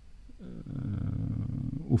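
A man's drawn-out, low hesitation sound (a filled pause like "yyy"), starting about half a second in and lasting about a second and a half, its pitch dropping at first and then holding steady.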